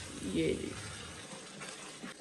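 Mutton boiling in a steel pot on the stove: a steady, even hiss of boiling liquid.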